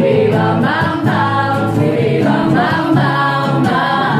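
Three women's voices singing a song together, with acoustic guitar accompaniment underneath.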